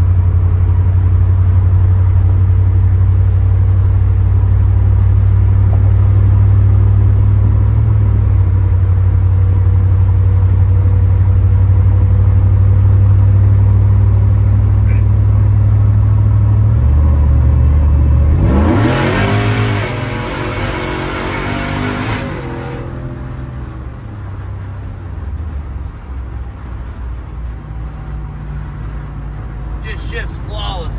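Supercharged LT5 V8 engine of a swapped 1993 Chevy pickup heard from inside the cab: a steady, loud low drone while cruising on the highway. About eighteen seconds in, the engine note rises in pitch with a rushing hiss for a few seconds as the truck accelerates, then it settles back to a quieter drone.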